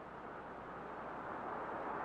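A car approaching along the street, its engine and tyre noise a steady hiss slowly growing louder.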